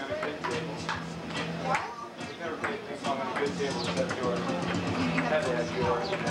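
Table-tennis ball clicking against paddles and the table in short, irregular knocks, over background music and people talking.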